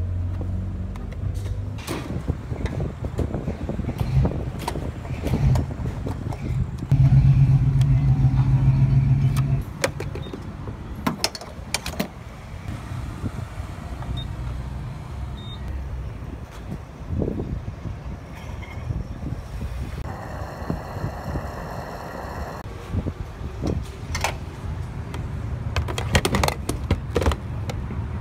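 Clicks and knocks of a car's fuel-door release lever and a gas pump's grade button and nozzle being handled, over a steady low vehicle hum that is louder for a couple of seconds about seven seconds in.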